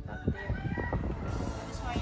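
A rooster crowing once, a call of over a second that falls in pitch as it ends.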